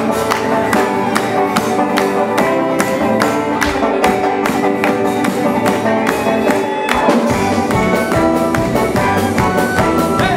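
Live folk band playing a lively instrumental tune on fiddle and banjo over a steady, quick beat.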